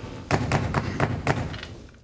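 A quick run of about six knocks and thuds as a person sits down on a wooden folding chair at a table.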